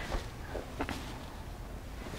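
Faint rustles and light taps of quilted fabric pieces being moved about on a cutting mat, over quiet room tone.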